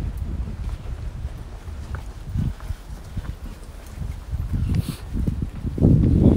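Wind buffeting a phone's microphone outdoors: a low, uneven rumble that rises and falls, with a brief click near the end.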